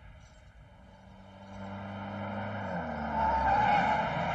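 A car growing louder as it approaches, its engine note dropping as it slows, then a tyre squeal as it brakes to a stop near the end.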